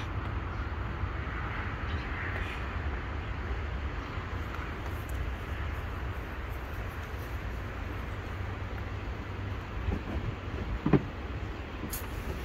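Steady low outdoor rumble, with a brief voice sound near the end.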